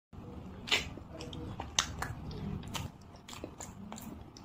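A person chewing a mouthful of rice and curry eaten by hand, with several sharp, wet mouth smacks and clicks.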